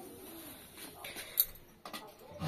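Faint sizzle of gulgule (sweet fritters) deep-frying in hot oil in a metal kadhai, with a single sharp click about one and a half seconds in.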